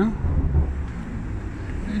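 Low rumble of city street traffic mixed with wind on the microphone, swelling briefly about half a second in.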